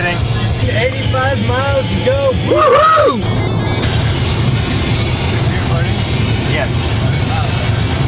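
Steady engine and road noise inside a moving car, under music with a sung melody. The melody stands out for about the first three seconds as a string of short rising-and-falling notes, then fades back under the drone.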